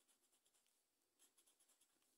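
Very faint scratching and light tapping of a small hand-held tool on a paper lottery scratch card, with a loose cluster of soft ticks in the second half.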